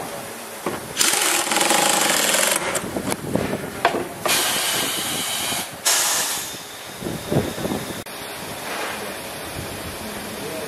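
Air-powered wrench running in three short bursts, a loud hissing rattle, as it drives a fastener into a motorcycle front fork tube. The first burst comes about a second in and lasts over a second, the other two close together in the middle; after them a lower steady workshop hum with a few knocks.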